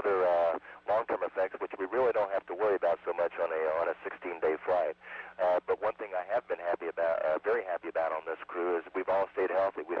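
A man speaking continuously into a handheld microphone, heard over the shuttle's space-to-ground radio downlink: a narrow, thin voice with nothing above the midrange, and a faint steady hum beneath it.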